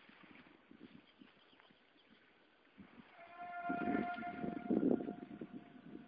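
Horse hoofbeats on a woodland trail, louder about halfway through, with a steady high-pitched tone held for about three seconds over them in the second half.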